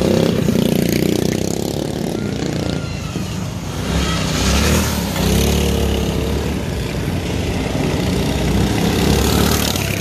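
Drift trikes running on concrete: a small engine revving as they pass, with the steady rumble of hard wheels rolling and sliding on the surface.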